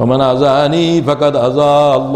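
A man chanting Arabic Qur'anic verses in a melodic recitation style, holding long drawn-out notes with a short break about a second in.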